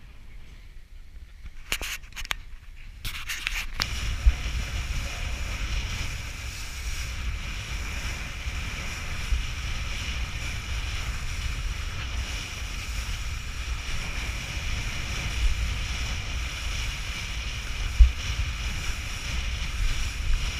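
Kitesurfing on open water: wind buffeting the microphone with a deep rumble, over the hiss of the board skimming choppy water, with a few sharp thumps. It comes in about four seconds in, after a quiet start with a few clicks.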